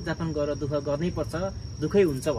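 Crickets trilling steadily, a thin high-pitched tone running unbroken under a man talking.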